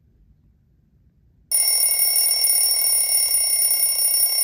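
Twin-bell alarm clock ringing: after faint room tone, a loud, steady bell ring starts suddenly about a second and a half in.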